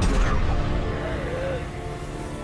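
Tense dramatic film score with held chords, and a sudden sci-fi energy-power sound effect surging in at the start.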